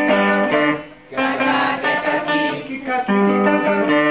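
Guitar strummed while a man sings a children's tongue-twister song over it, with a short break in the sound about a second in.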